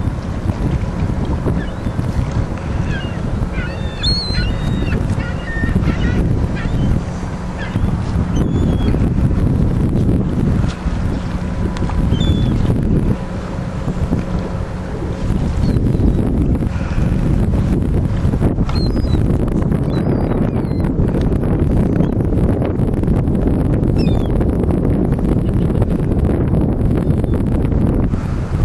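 Wind buffeting the microphone, a heavy rumble throughout. Birds call in short chirps, most of them in the first few seconds, and a faint steady hum runs under the first half.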